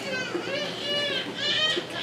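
A small child's high voice making about three drawn-out calls that rise and fall in pitch.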